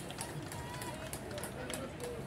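Voices calling out in the distance across a football pitch, over steady background noise.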